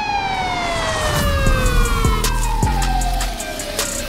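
Music with a beat and a siren-like wail sound effect that slowly rises and then falls in pitch, with a falling pitch sweep over the first two seconds.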